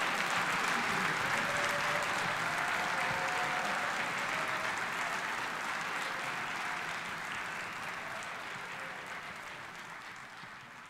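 Audience applauding at the end of a song. The applause is loudest at first and slowly fades out.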